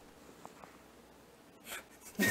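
Very quiet room tone while a take rolls. Two tiny faint blips come about half a second in, and a brief soft rustle comes near the end.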